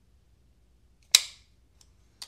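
Spyderco Vallotton Sub-Hilt folding knife's blade snapping into place: one sharp metallic click about a second in, then a couple of faint ticks.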